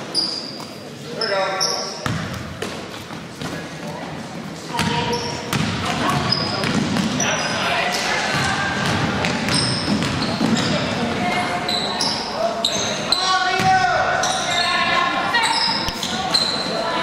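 Indoor basketball game sounds echoing in a gym: a basketball bouncing on the hardwood floor and sneakers squeaking in short bursts as players run, with players and spectators calling out. The noise picks up about five seconds in as play moves up the court.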